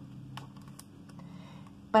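A page of a picture book being turned by hand: a few light, crisp paper clicks with a soft rustle in the first second.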